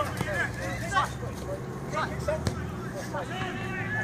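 Faint, distant shouting of players on a football pitch over a steady low hum, with one sharp knock about two and a half seconds in.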